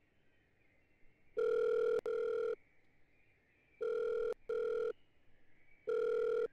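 Telephone ringback tone of an outgoing call waiting to be answered: a steady double ring, two short tones back to back, repeating about every two and a half seconds. Two full double rings are heard, and a third begins at the very end.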